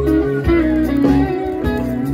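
Live rock band playing, electric guitar to the fore over bass and drums, heard from within the audience.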